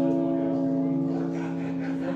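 Railway-station public-address chime from the INISS announcement system: several electronic tones, each entering a moment after the last, held together as a steady chord that fades near the end.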